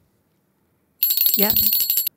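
A bell sound effect, a fast metallic trill of many quick strikes with a high ringing tone, like a bicycle or old telephone bell, starting about a second in.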